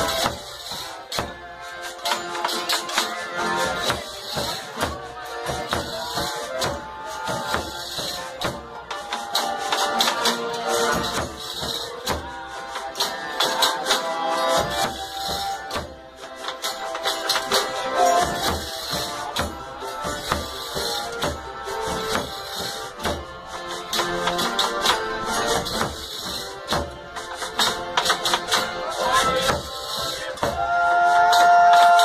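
Folia de Reis folk ensemble playing live: accordion and acoustic guitars over a steady hand-percussion beat from a tambourine-style frame drum.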